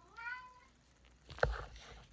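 A single short meow-like call, its pitch rising and then holding for about half a second. Near the end comes a knock and a low thud as the picture book is lowered.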